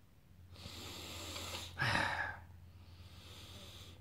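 A man sniffing a glass of brown ale to smell its aroma, drawing in a long, soft breath through his nose, then a shorter, louder breath about two seconds in.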